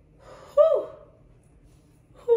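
A woman's short wordless exclamation of delight. After a faint breath, a high voiced note comes about half a second in and slides quickly down in pitch.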